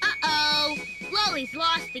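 Cartoon character voices speaking over background music, with a thin, high, slightly wavering tone held until near the end.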